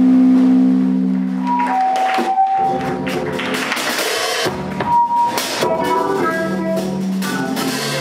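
A live jazz band playing: trumpet leading over drum kit, bass and keyboard, with cymbals and drums struck throughout.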